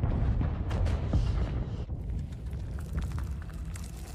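A long, low explosion rumble from a TV soundtrack that peaks about a second in and slowly fades, with dramatic score music underneath.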